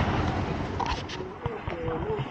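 A low vehicle engine rumble that fades out in the first second, leaving quieter street ambience with faint, brief voices.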